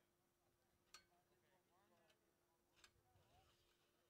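Near silence: faint voices in the background over a steady low hum, with two faint clicks, about a second in and near three seconds in.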